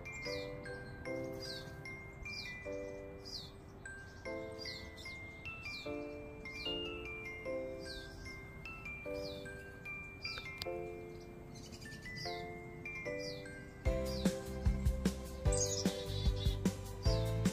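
Wind chimes ringing in overlapping chords, with a small songbird repeating a short falling chirp about once a second over them. Near the end, a run of louder low thumps and clicks comes in.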